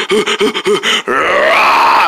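A man's voice making chase noises for a puppet play: a quick run of short vocal bursts, about six in a second, then one long strained cry starting about a second in.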